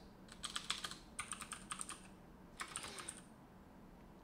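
Quiet typing on a computer keyboard: three short runs of keystrokes with brief pauses between them.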